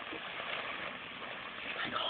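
Steady background hiss of a low-quality webcam microphone, with no distinct sound events; a faint voice starts near the end.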